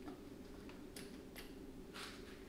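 A few faint, scattered clicks from work in a car's engine bay, over a low steady hum.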